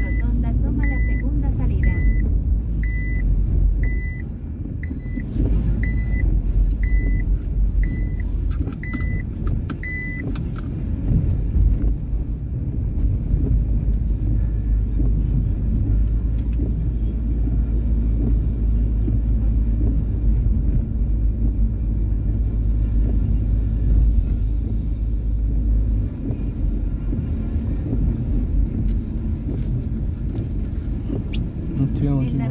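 Steady low road and engine rumble inside a moving car's cabin. A high electronic warning beep repeats about once a second for roughly the first ten seconds, then stops.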